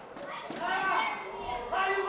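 Children shouting and calling out in high voices, several calls one after another.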